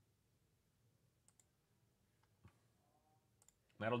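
A few faint, short clicks of a computer mouse, spread out and separated by stretches of quiet room tone.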